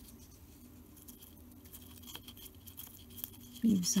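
Faint scattered light taps and clicks of small crafting tools and materials handled on a tabletop: a stick dabbing glue on card and tweezers placing tiny leaves. A woman's voice starts near the end.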